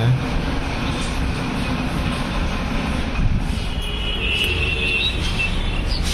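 Steady city street traffic noise: an even rumble of vehicles on a busy road, with thin high-pitched tones joining in over the second half.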